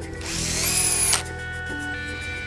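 Handheld drill-driver run in one short burst, driving a screw that fastens a loudspeaker driver into its cabinet. The motor whine rises as it spins up, then cuts off suddenly just over a second in.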